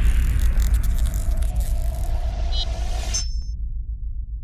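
Cinematic logo-reveal sound effect: a deep rumble fading away under a glittering high shimmer and a held tone, which cut off suddenly about three seconds in, leaving the low rumble to die down.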